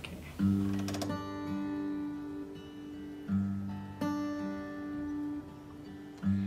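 Acoustic guitar playing a slow intro: a few chords struck and left to ring, the first a little way in and the next two around the middle.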